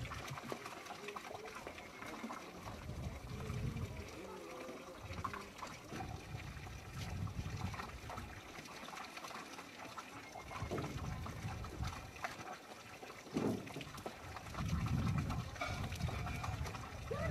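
Faint, indistinct voices over an outdoor background of low rumbling noise that swells and fades irregularly.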